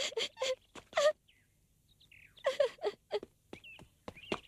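A young woman's voice sobbing and wailing in short breathy bursts, with a break of about a second in the middle. Faint bird chirps sound in the gap.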